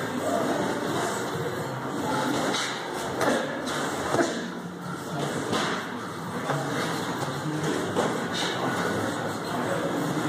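Boxing gym din with scattered thuds and shuffling as two boxers grapple in a clinch on the ring canvas.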